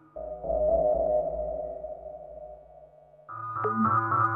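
Title-card music: a held chord over a deep bass that fades away, then a new tune with wavering tones starts about three seconds in.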